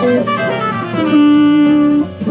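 Gibson Les Paul electric guitar playing a jazz line: a quick run of notes, then one long held note from about halfway, over a drum backing.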